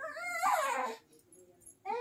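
A toddler's high-pitched cry, about a second long and falling in pitch, then a brief pause before another short vocal sound starts near the end.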